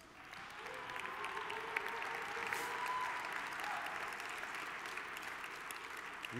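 Large audience applauding. It builds over the first second, then holds and eases off slightly toward the end.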